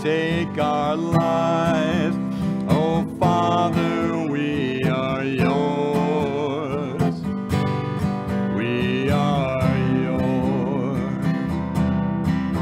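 Acoustic guitar strummed in steady chords, accompanying a sung hymn melody with held, wavering notes.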